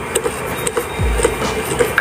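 Low noise inside a truck cab with faint music in the background and two deep low thuds, one about a second in and one at the end.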